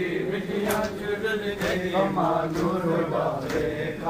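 Men's voices chanting a noha, a Muharram lament, in unison, with a sharp slap about once a second keeping time: the rhythm of matam, hands struck on bare chests.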